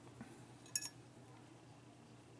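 A single short, light clink of a small hard object about three-quarters of a second in, while a paintbrush is being picked up; otherwise faint room tone.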